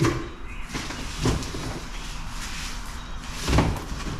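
Cardboard shipping box and its packing being handled: rustling as contents are shifted around inside, with three dull knocks, one right at the start, one about a second in and one near the end.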